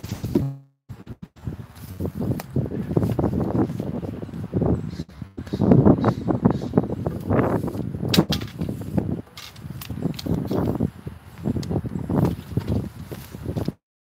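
Rustling and knocking as arrows are pulled from an archery target and gathered by hand, with a sharp click about eight seconds in.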